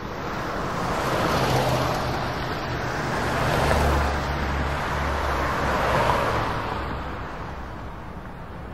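Dense avant-garde orchestral sound cluster from a large wind orchestra with double basses and Hammond organ. It swells in waves, loudest around the middle and again a little later, over sustained low notes, then fades toward the end.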